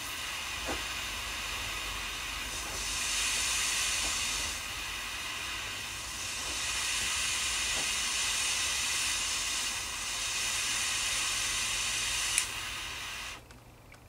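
Prof angled-neck butane jet lighter burning on high against an aluminium can, its jet flame hissing steadily and swelling a little at times. There is a short click near the end, and then the hiss cuts off.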